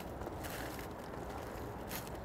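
Faint rustling of aluminium foil and soft squishing as gloved hands toss cubes of smoked brisket in rendered fat and juices.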